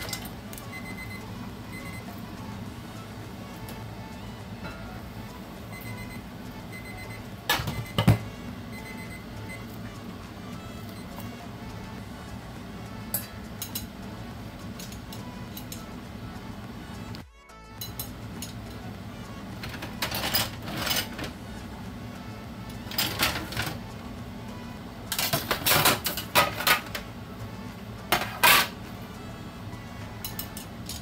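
Stainless-steel wok lid coming off the steamer with one loud metal clatter about 8 s in, then a run of sharp metal clinks and scrapes in the last third as plate-lifter tongs grip the hot plate of steamed fish inside the wok. A steady low hum and music run underneath.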